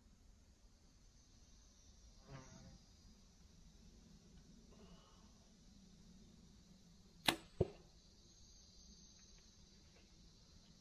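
A compound bow shot from a treestand: a sharp snap as the string is released, then about a third of a second later a second sharp crack as the arrow strikes the target.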